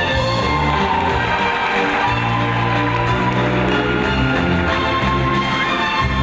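Music accompanying a circus acrobatic act: sustained melodic notes over shifting bass notes.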